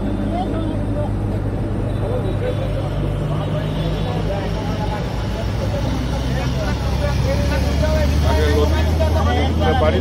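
A steady low engine hum, growing a little louder in the second half, with people talking over it.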